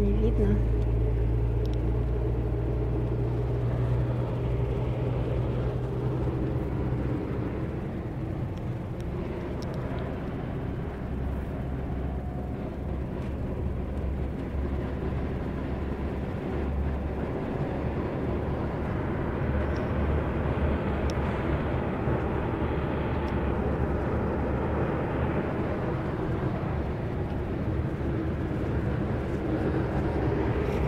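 Steady low engine and road rumble heard inside a moving coach bus, with road noise from the slushy, snowy highway.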